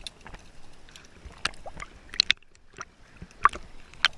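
Underwater sound picked up by a submerged camera: a muffled background broken by irregular sharp clicks and knocks from hands, gear and the mesh catch bag being handled, the loudest about three and a half seconds in.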